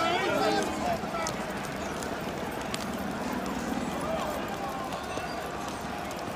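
Outdoor crowd with shouting voices, over the clatter of many booted feet running on a tarmac road.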